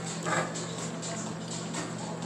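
Restaurant dining-room noise: a steady hum with scattered light clicks and clatter, and one brief louder sound about a third of a second in.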